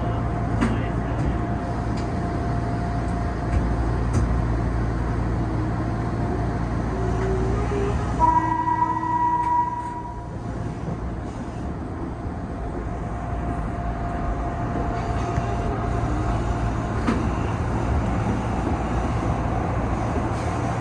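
Odakyu 8000 series electric train heard from the driver's cab as it pulls away and gathers speed, its running noise steady throughout. About eight seconds in, the train's horn sounds once, a single steady blast of about a second and a half.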